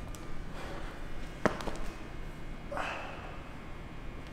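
A single sharp knock about a second and a half in, followed by a few lighter taps, then a short, sharp exhale near three seconds, over quiet room tone.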